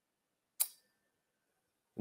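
A single short, sharp click about half a second in.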